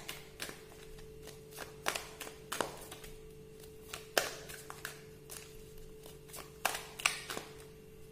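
A deck of tarot cards being shuffled and handled, giving irregular sharp card clicks and taps, about a dozen, with the loudest around the middle and near the end. A faint steady tone runs underneath.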